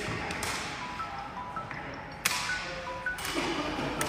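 Sepak takraw ball being kicked back and forth: sharp smacks that echo around a large hall, three of them, the loudest about two seconds in. Short high squeaks come between the hits.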